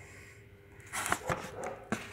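Steel camshafts being handled on a wooden board: a few light knocks and scrapes about a second in, and one sharper knock near the end.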